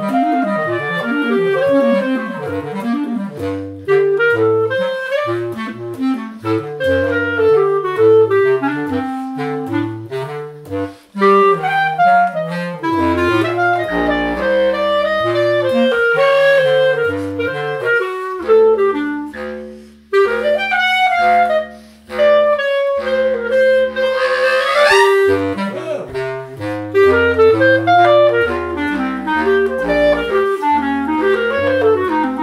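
Clarinet duet in jazz style: a Yamaha SE Artist B-flat clarinet plays fast melodic runs over a bass clarinet fitted with a jazz tenor saxophone reed, which carries a moving low line. The bass clarinet holds some long low notes partway through, and the clarinet plays a quick upward run near the end.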